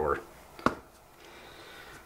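The last moment of a man's voice, then a single sharp click about two-thirds of a second in, from a hand at the dice on the wargaming table. Otherwise low room tone.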